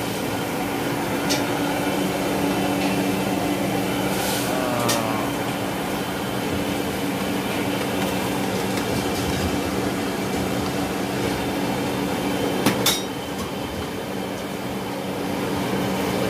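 Commercial gas stove burners running steadily at high flame, with a low hum under them. A metal ladle knocks against the pan a few times, most sharply near the end.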